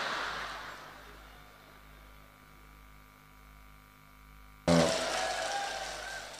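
Audience laughter fading away, a stretch of near silence, then a second sudden burst of crowd laughter about four and a half seconds in that fades out again.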